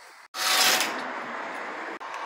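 Compressed-air blow gun blasting dirt off the underside of an automatic transmission pan: a hiss that starts suddenly with a strong first burst, then settles into a steady blast.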